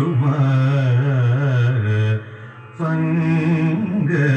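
A man singing a Carnatic-style devotional song to Rama in long, wavering held notes, with a short break a little after two seconds in.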